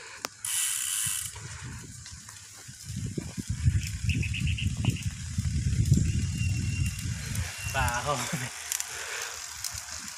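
Road bike's rear freehub ticking as the rider coasts, with a low rumble of wind on the microphone through the middle.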